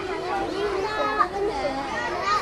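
Several children's voices talking and calling out at once, overlapping chatter.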